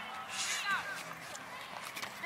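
Faint voices over outdoor background noise, with a short high falling call about half a second in.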